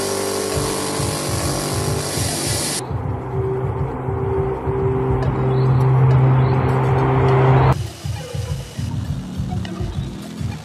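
Droning of a Tu-95 bomber's turboprop engines and contra-rotating propellers, with a strong steady low tone that cuts off abruptly near the end. Electronic background music plays along.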